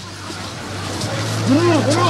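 Outdoor location sound: a steady low hum, like an engine running nearby, under a noisy background that slowly grows louder, and a person's voice calling out briefly in the second half.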